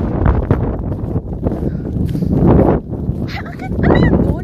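Wind buffeting the microphone, a steady low rush, with short bits of a person's voice near the end.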